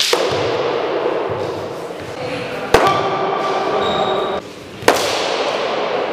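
Longsword blows striking a fencer's padded leather fencing mask: three sharp hits, one at the start, one near the middle and one near the end, each followed by a brief metallic ringing.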